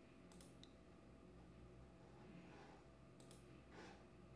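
Near silence with faint computer mouse clicks: a pair about a third of a second in, one more shortly after, and another pair a little after three seconds, as a poll is launched on screen. A short soft noise follows near the end.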